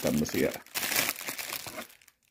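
Thin clear plastic packaging bag crinkling as it is handled and turned over, a dense crackle for about a second after a brief bit of voice at the start.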